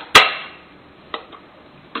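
Batteries being pressed into a smart lock's battery holder: one sharp click with a short ring near the start, then a fainter click about a second later.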